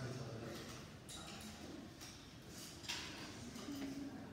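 Faint classroom murmur: students talking quietly among themselves while working, with a short sharper noise about three seconds in.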